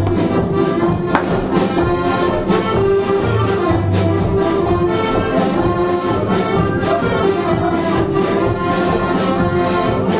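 Traditional Bourbonnais folk dance music: a steady instrumental tune with sustained notes.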